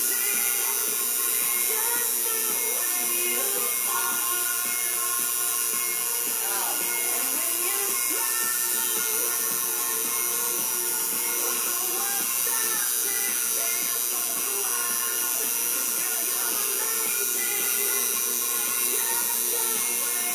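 Tattoo machine buzzing steadily as it works, over music playing in the background.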